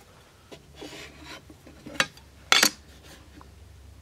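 Thin stainless-steel square rubbing and scraping across an MDF board for about a second, then two sharp clicks about half a second apart.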